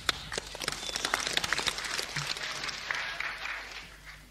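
Audience applauding at a live concert: a dense patter of clapping that dies away near the end.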